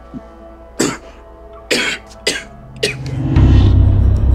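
A man's four short, breathy vocal bursts over a sustained drama score. About three seconds in, a deep, loud low swell rises in the music.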